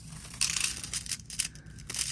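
Rustling, then a run of light clicks and clatters: small plastic items being handled, starting about half a second in.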